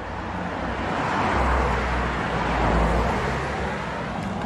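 A road vehicle passing by, its engine rumble and tyre noise building, loudest in the middle, then fading away.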